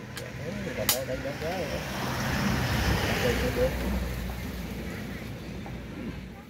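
A motor vehicle passing, its noise swelling to a peak about halfway through and then fading. Voices talk at the start, and there is one sharp click about a second in.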